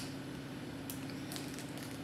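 Soft, wet mouth clicks of a child chewing a gummy candy, over a steady low hum in the room.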